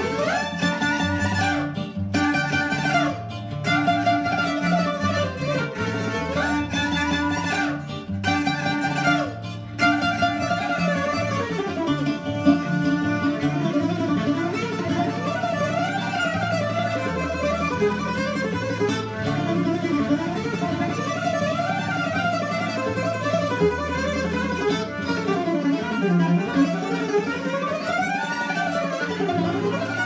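Pontic lyra (kemenche) bowed in a sliding melody with brief pauses between phrases, over an accompaniment with a plucked-string part and a stepping bass line.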